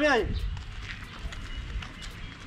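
A voice trails off just after the start, followed by steady outdoor background noise with an uneven low rumble.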